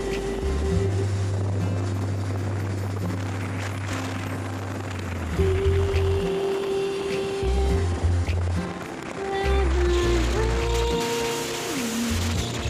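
Background music: a melody over long held bass notes, with a sliding note near the end.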